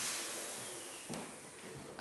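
Steady high hiss slowly fading, with a single faint knock about a second in.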